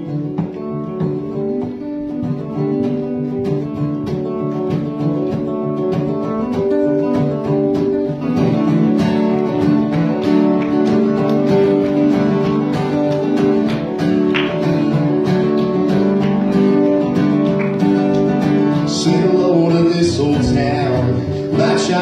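Live acoustic country band playing the opening of a song on two acoustic guitars and a mandolin, growing fuller and louder about eight seconds in.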